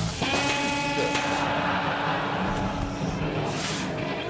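Electrical short-circuit in a rock band's live stage rig: a held buzzing tone, joined about a second in by a crackling, fizzing hiss of sparks that fades near the end.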